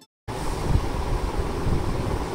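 Steady hiss and low rumble of room noise picked up by a microphone, cutting in abruptly about a quarter second in after a brief moment of silence.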